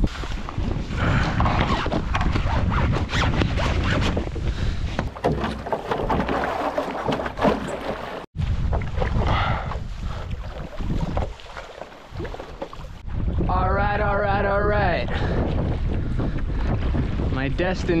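Wind buffeting the microphone over the splash and slosh of water around a stand-up paddle board and its paddle, with an abrupt cut about eight seconds in. A short wavering voice-like tone rises over it a little before the end, and talking begins at the very end.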